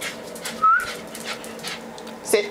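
Jack Russell terrier giving one short, high whine, slightly rising, less than a second in, among soft scuffling noises.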